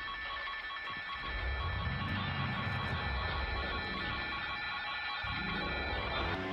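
Live hard-rock band through a festival PA: a chord of several steady high tones is held and rings on unchanged over a low rumble.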